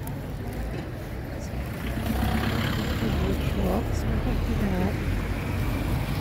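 Low rumble of a motor vehicle's engine, growing louder about two seconds in and holding, with voices of people talking in the background.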